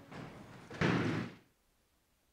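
Faint rustling, then a louder half-second burst of noise about a second in, after which the sound cuts out abruptly to silence.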